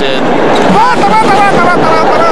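Steady crowd noise from spectators in an arena, with high-pitched voices shouting and cheering from about a second in.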